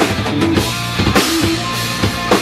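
Live rock band playing loud, with drum kit, electric guitar, bass guitar and keyboards, the drums hitting a steady beat.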